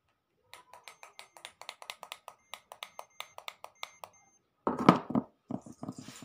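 A quick run of sharp clicks, about six a second, lasting some three and a half seconds. Then comes a louder thump just before the five-second mark, with a few smaller scuffing knocks near the end.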